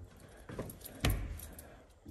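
Metal lever handle and latch of a wooden interior door clicking and rattling as the door is opened, with the sharpest click about a second in.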